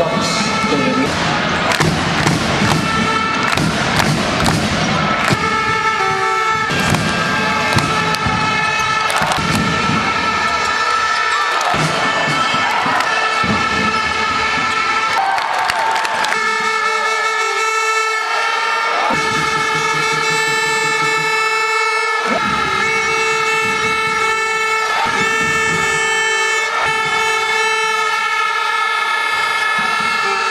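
Basketball arena crowd noise with knocks from the game, then a loud, steady horn tone held in long blasts with short breaks through the second half, typical of fans' air horns in the stands.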